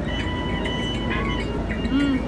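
Busy restaurant dining-room noise: indistinct chatter of diners over a steady low rumble.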